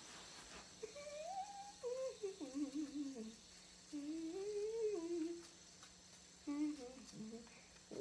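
A child humming a wandering, meandering tune in three phrases with short pauses between them, the pitch gliding up and down.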